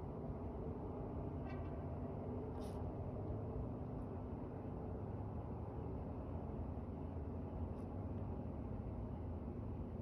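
Steady low rumble of outdoor background noise, with a faint short chirp about a second and a half in and a brief click shortly after.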